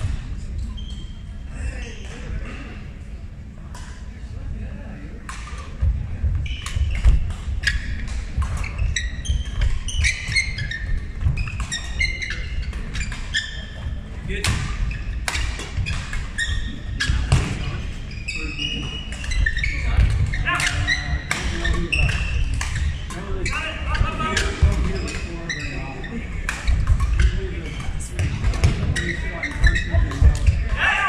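Badminton doubles rally: sharp racket strikes on the shuttlecock and heavy footfalls thumping on a wooden court floor, in a large echoing sports hall with voices in the background.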